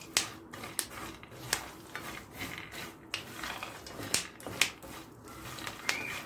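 Mixed chopped nuts and pumpkin seeds being stirred in a frying pan with a silicone spatula, giving irregular sharp clicks and crackles over a scraping rustle. This is the sign that the nuts have begun to roast.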